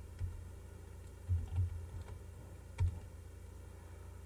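Faint, irregularly spaced keystrokes on a computer keyboard, about five in all, as a short terminal command is typed and entered.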